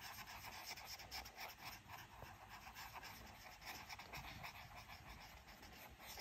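Faint scratching of a felt-tip marker on paper, a small circle being coloured in with many quick, repeated strokes.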